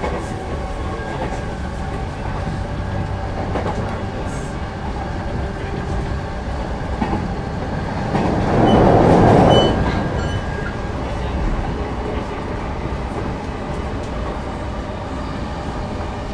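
Interior running noise of a JR Yokohama Line electric commuter train under way between stations: a steady rumble of wheels on rail. About halfway through it swells louder for roughly two seconds, then settles back.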